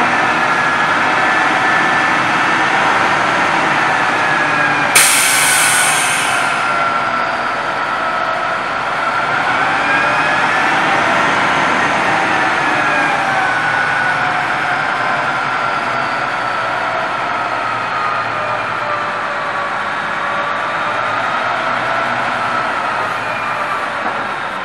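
A 1986 Kenworth C500's Cummins NTC 300 diesel running steadily while its PTO-driven hydraulic hoist lowers a roll-off container onto the bed, with a whine that slowly wavers up and down in pitch. About five seconds in, a sudden hiss of air lasts a second or so.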